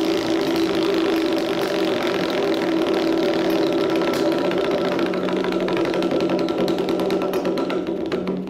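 Large prize wheel spinning, its pointer clicking rapidly against the pegs, with the clicks spreading out near the end as the wheel slows. Music with steady held tones plays under it.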